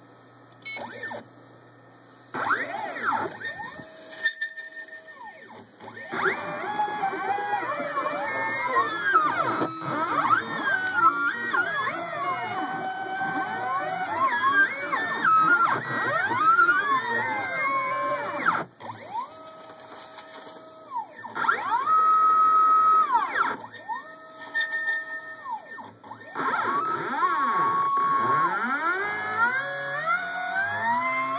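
NEMA23 stepper motors of a home-built CNC machine whining as they drive the axes. The pitch sweeps up and down in arcs as the pen traces curves, and on straight moves it rises, holds and falls. It starts about two seconds in, with short lulls about two-thirds of the way through.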